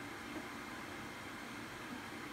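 Faint steady hiss of room tone, with no distinct sound standing out.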